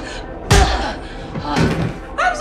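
A single sudden, heavy thud about half a second in, the loudest sound, an impact in a physical struggle. Near the end comes a woman's strained scream.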